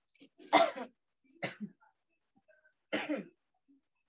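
A person coughing three times, each cough short, with about a second between them; the first is the loudest.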